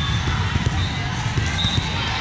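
Spectators' chatter in a sports hall during a volleyball rally, with short thuds of the ball and players' feet on the court.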